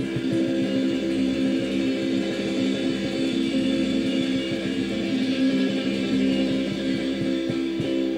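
A live band playing, led by electric guitar, with a chord ringing out and held steadily.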